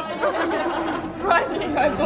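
Indistinct voices chatting in a large room.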